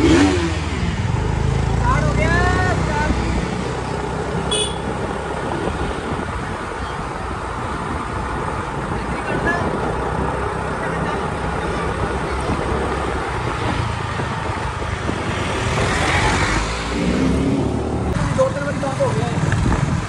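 Motorcycle engines running while riding through a street, with steady road and wind noise throughout.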